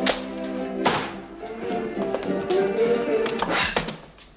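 Dance music playing on a gramophone record, with sharp knocks from a scuffle over the machine. The music cuts off abruptly at the end as the record is stopped and ruined.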